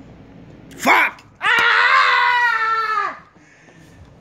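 A person's voice: a short yelp about a second in, a click, then a loud drawn-out high-pitched wail lasting about a second and a half that dips in pitch as it ends.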